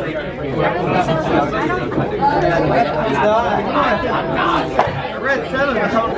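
Chatter of many teenagers talking over one another in a classroom, several voices overlapping without a break.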